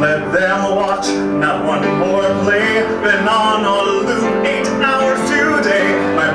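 A man singing a pop ballad over piano accompaniment, his voice carrying wavering, held notes above steady chords.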